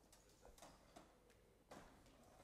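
Near silence in a large room, broken by a few faint, irregular clicks and knocks, the clearest about three-quarters of the way through.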